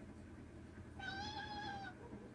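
A single high-pitched, drawn-out animal cry lasting about a second, starting halfway in, rising slightly and then falling away.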